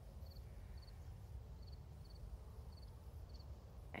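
Low wind rumble on the microphone, with faint, quick high-pitched triple chirps repeating about every half second.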